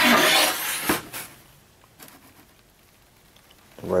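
Black plastic motorcycle fairing piece rubbing and scraping as it is handled in gloved hands, for about a second.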